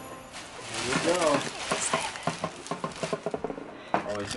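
A brief wordless voice about a second in, then a run of irregular crinkles and crackles from a large paper gift bag being handled.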